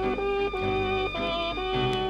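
A 1930s dance orchestra playing a slow foxtrot from an old shellac 78 rpm record: held melody notes that change about every half second over a rhythm accompaniment.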